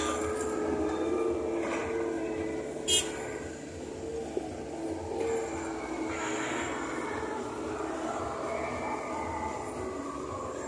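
Road traffic: minibuses and cars driving past, with a steady engine hum and a short sharp click about three seconds in.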